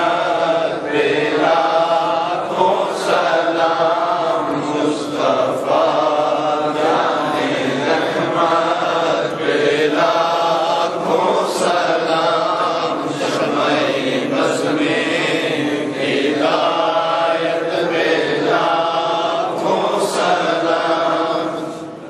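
A man's voice chanting devotional verse in a continuous melodic line, unaccompanied by instruments.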